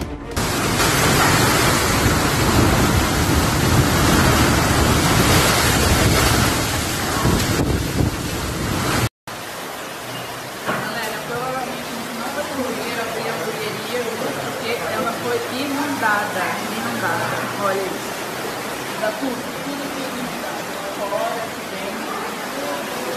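Storm noise: a dense, loud wash of wind and heavy rain on a phone microphone for about nine seconds, which cuts off suddenly. Then comes a quieter steady rush of floodwater pouring down a street, with people's voices over it.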